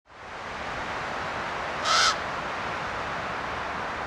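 A single harsh bird call, like a crow's caw, about a third of a second long, near the middle, over a steady background hiss.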